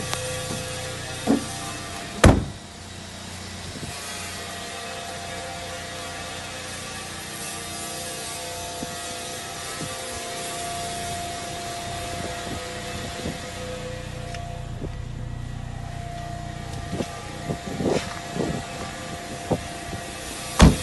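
A steady mechanical hum with hiss, with one loud knock about two seconds in and a cluster of smaller knocks and clicks near the end.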